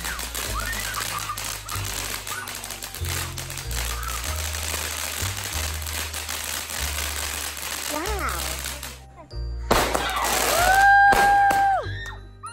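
Background music with a stepping bass line over rapid crackling and popping from ground fireworks. The crackling stops about nine seconds in, and near the end a steady high tone is held for about a second.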